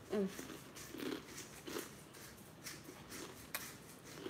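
A person chewing a crunchy chip, with short closed-mouth "mm" hums several times and faint crunching clicks between them.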